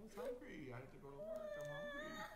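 A young girl crying: a high wail that settles into one long held note about halfway through.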